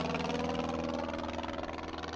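An engine running steadily, its pitch sinking slightly as it slowly fades.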